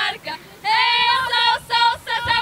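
Girls singing unaccompanied in high voices: a short quiet stretch, then a long held note about half a second in, followed by a few shorter sung notes.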